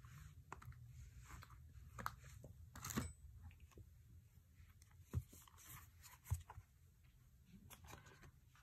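Quiet handling of a deck of oracle cards: soft scrapes and light taps as cards are slid off the deck and laid down on a cloth. A few sharper clicks stand out, about three, five and six seconds in.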